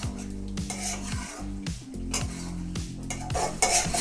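Steel spatula scraping and stirring thick chicken gravy in a kadai, in repeated strokes about twice a second, with a light sizzle from the pan. Background music runs underneath.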